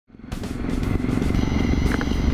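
A Triumph motorcycle's engine running on the move, mixed with background music. The sound fades in just after the start.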